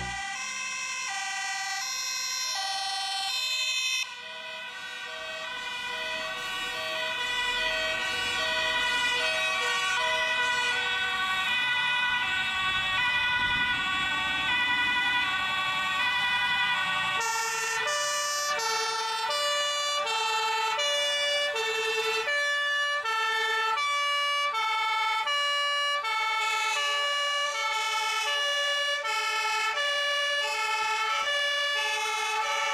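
Two-tone sirens of several Dutch fire engines sounding together, their alternating high and low notes overlapping. About 17 seconds in, one siren's steady two-note alternation comes clearly to the fore as the trucks draw closer.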